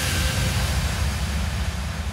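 Whoosh transition sound effect carrying on as a steady low rumble with a hiss over it, slowly fading toward the end.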